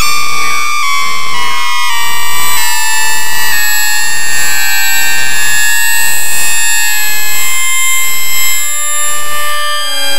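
Electronic music from the DIN Is Noise software synthesizer: a dense cluster of held high tones, several of them stepping down in pitch in the first few seconds, the whole gently swelling and easing in level.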